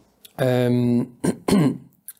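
A man's voice making a short held vocal sound at an even pitch, about half a second long, then two brief shorter vocal sounds just before he starts speaking.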